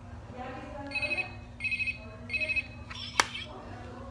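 Toy flip phone sounding electronic ringing tones in three short bursts, then a sharp click as the flip snaps shut.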